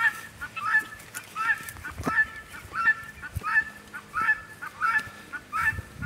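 Helmeted guineafowl calling: a harsh, high call repeated steadily, about three calls every two seconds.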